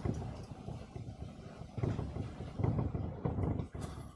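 Marker strokes on a whiteboard as short tick marks are drawn one after another: soft, irregular scratches and taps over a low rumble.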